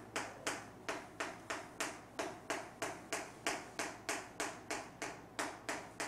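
Chalk tapping on a chalkboard in quick, even strokes, about three a second, as letters are written one after another into the cells of a grid.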